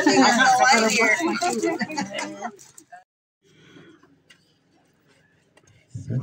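People's voices, loud for the first two and a half seconds, then cutting off abruptly to near silence with only faint scattered sounds.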